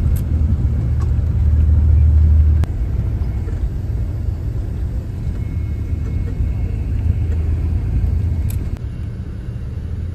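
Steady low rumble of a road vehicle on the move, heard from inside its cabin, with a few faint clicks. The rumble drops suddenly in level a little over two seconds in and again near the end.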